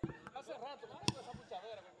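Faint voices talking in the background, with one sharp click about a second in.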